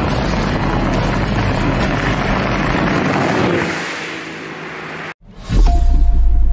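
Bass boat running at speed: the outboard engine drones under a rush of wind and water, fading away after about three and a half seconds, with music underneath. After a brief break near the end, a deep boom opens new music.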